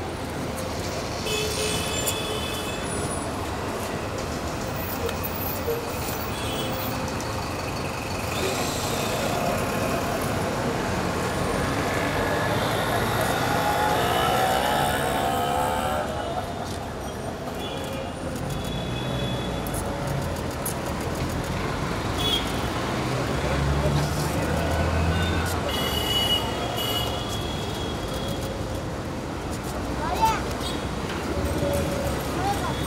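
Busy outdoor street ambience: road traffic running steadily, short horn-like toots now and then, and the voices of a gathered crowd talking among themselves.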